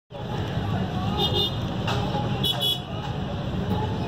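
Street traffic running steadily, with two short vehicle horn toots, one a little over a second in and another about two and a half seconds in, over faint voices.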